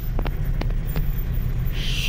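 Low, steady engine rumble of vehicles idling in a ferry's enclosed car deck, heard from inside a van's cab, with a few faint clicks in the first second.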